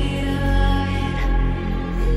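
Background music: long held chords over a deep bass.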